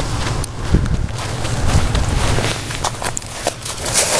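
Footsteps walking over snow: irregular thumps over a steady rushing noise.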